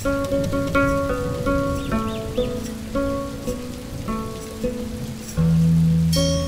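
Music: a plucked string instrument plays a melody of short, separate notes over a steady low drone. A deeper sustained tone comes in about five seconds in.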